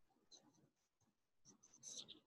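Near silence: faint room tone with a few soft ticks and rustles.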